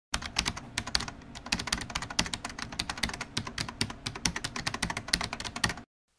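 Rapid typing on a keyboard: a dense run of key clicks, many a second, that starts abruptly and cuts off suddenly just before the end.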